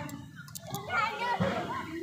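Children's voices in the background of a playing field, faint talk and calls from kids at play, quieter than the close voices either side.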